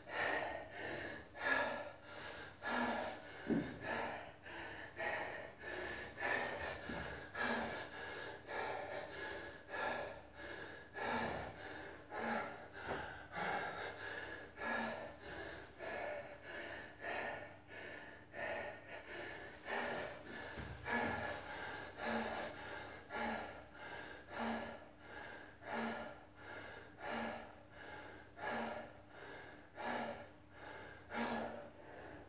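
A man panting hard after a CrossFit workout: fast, regular, heavy breaths, about three every two seconds, as he recovers his wind. A faint steady high whine runs behind them.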